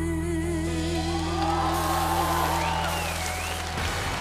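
A female singer holds the final note of a pop ballad with vibrato over a sustained backing-band chord. About a second in, studio audience applause and cheering swell up as the band's chord rings on, cutting off just before the end.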